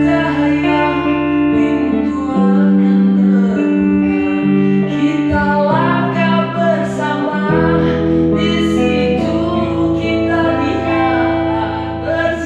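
A man singing a slow song into a microphone, accompanying himself on electric guitar, with long held notes over sustained chords.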